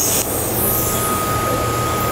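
DC TIG welding arc on aluminum under pure helium shielding gas, a steady hiss with a low hum underneath, as a tack weld is laid.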